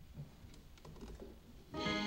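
Faint rustling and small clicks, then, about a second and three-quarters in, an instrument starts the introduction to the opening hymn with a held, sustained chord.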